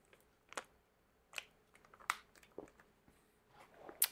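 Jelly drink being sucked from the spout of a plastic pouch: several short, faint mouth clicks, spaced under a second apart.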